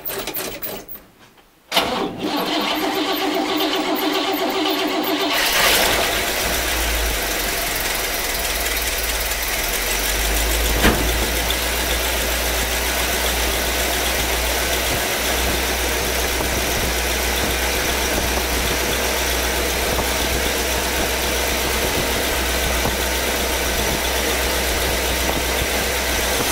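1956 Cadillac Sedan DeVille's 365 V8 cranking on the starter for a few seconds, then catching and settling into a steady idle, now fed by a freshly rebuilt mechanical fuel pump.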